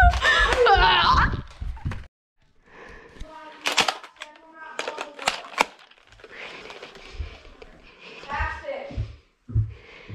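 Indistinct children's voices, loud for the first second or so and then fainter in the background. A few sharp clicks or knocks sound in the middle, and there are short low thumps near the end.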